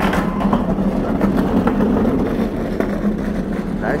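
Steady low mechanical drone, with a few brief clicks and faint voices.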